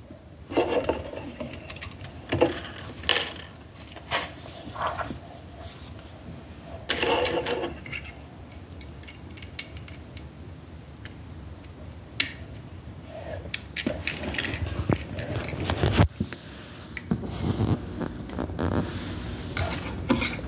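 Plastic Lego bricks clicking and rattling as small pieces are handled and snapped onto a model. Irregular sharp clicks and short clatters come with brief pauses between them.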